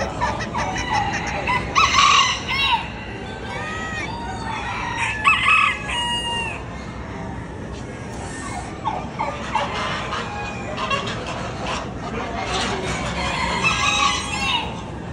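Roosters crowing, loudest about two seconds and again about five seconds in, with clucking from other chickens over the steady background noise of a busy poultry barn.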